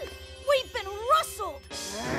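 Cartoon soundtrack: background music with a held note, over a character's wordless vocal sounds that glide up and down in pitch between about half a second and a second and a half in.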